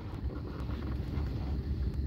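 A low, steady rumble with a faint rustling hiss over it, with no clear single event.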